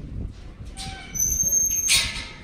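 A single high, steady whistle held for most of a second, a sheepdog handler's command whistle to a working kelpie, over low rumbling noise, with a short loud rustle just at the end.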